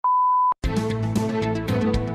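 Radio time signal: the last, longer pip of the hourly beeps, a steady high beep of about half a second marking the top of the hour. It stops abruptly and theme music with drum hits starts straight after.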